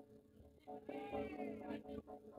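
Jaranan gamelan accompaniment with steady ringing metal notes. About a second in, a wavering, cat-like high cry rises over the music for under a second.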